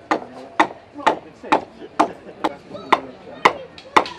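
Shipwright's adze chopping into a wooden plank in steady, even strokes, about two a second, dubbing the surface by taking off thin slivers of wood.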